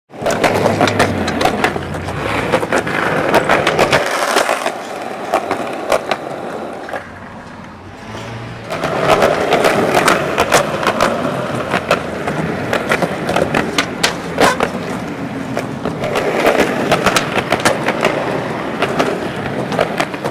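Skateboard wheels rolling on a concrete sidewalk, broken by many sharp clacks of the board popping and landing tricks. The rolling drops away for a few seconds about a quarter of the way in, then picks up again.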